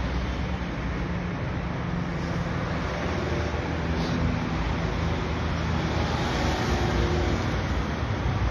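Steady rumble of street traffic, an even noise of passing motor vehicles with no sharp events.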